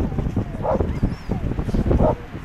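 A dog barking twice during an agility run, over a low rumble of wind on the microphone.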